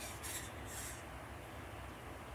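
Faint rubbing and scratching of thin craft wire being wound by hand around a pencil: three brief scratchy sounds in the first second, then only a low hum.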